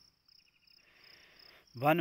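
A pause in speech filled with faint background sound: a thin, high-pitched chirping that pulses evenly, over a low hiss. A voice starts again near the end.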